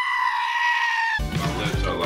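A black-faced sheep's bleat: one long, drawn-out call that falls slightly in pitch at its end and cuts off sharply about a second in.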